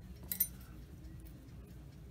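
One short, light metallic clink, about a third of a second in, of steel hobby tweezers being picked up from beside a metal hobby knife. A faint steady room hum lies under it.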